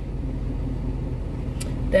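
Steady low hum of a car's idling engine, heard from inside the cabin, with a short click near the end.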